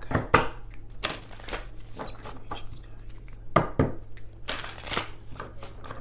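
An oracle card deck being handled and shuffled by hand: a run of irregular light card clicks and slaps, with a brighter flurry of shuffling near the end.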